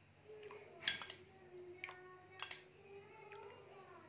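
A metal spoon clinking a few times against a small glass bowl while liquids are mixed. The sharpest clink comes about a second in, with lighter ones near two and two and a half seconds. A faint wavering tone runs underneath.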